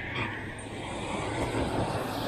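Steady outdoor background noise: a low rumble under an even hiss.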